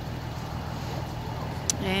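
Vehicle engine idling with a steady low hum; a single sharp click near the end.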